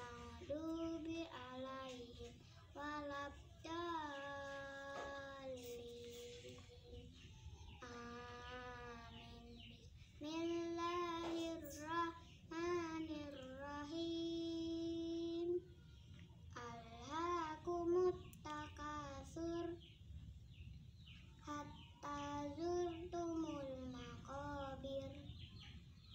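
A young girl reciting the Quran from memory in a melodic chant, phrase by phrase, with long held notes and short pauses between verses.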